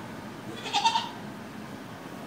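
Billy goat bleating once, a short high call just under a second in.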